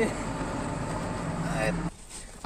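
Truck engine idling steadily, a low even hum under a haze of outdoor noise, which stops suddenly near the end.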